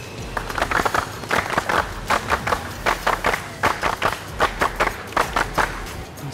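A group of people clapping in unison, a rhythmic clap salute at about three claps a second.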